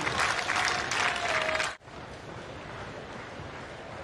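Tennis crowd applauding and clapping after a point. It cuts off suddenly about two seconds in, leaving a quieter, steady outdoor court murmur.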